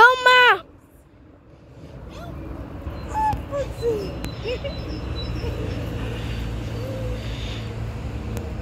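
A short, high-pitched squeal from a voice right at the start, then a steady low rumble that builds up after a couple of seconds, with a few faint short chirps over it.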